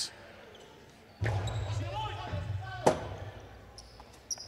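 One sharp crack from the hard jai-alai pelota striking a hard surface about three seconds in, with a short ring of hall echo after it. A low hum and faint voices fill the hall behind it.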